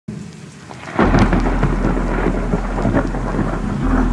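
Rain with a thunderclap about a second in that rumbles on loudly.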